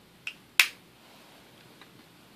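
Small plastic toy makeup pot being handled and its lid clicked shut: a light click, then a sharp, much louder click a third of a second later, and a faint tick near the end.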